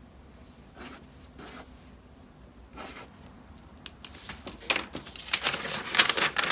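Papers and a folder being handled: a few soft swishes of paper early on, then from about four seconds in a quick run of crisp rustling and crinkling that grows louder toward the end.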